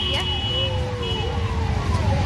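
Steady road traffic rumble, with a thin high steady tone in the first second and a long, slowly falling voice-like note in the background.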